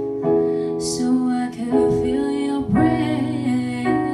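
A woman singing a slow song to her own digital piano accompaniment, with held keyboard chords that change about every second under a voice that slides between notes.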